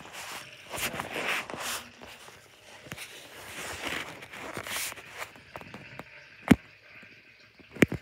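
Handling noise of a tablet being moved around and over a tornado toy: irregular rubbing and rustling, with a sharp knock about six and a half seconds in.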